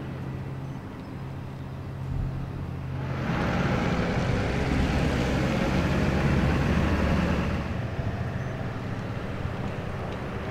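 Steady low hum of an idling vehicle engine, with a passing vehicle's road noise building about three seconds in and fading out by about eight seconds.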